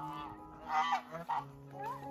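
Domestic geese honking: a few short calls, each rising and falling in pitch.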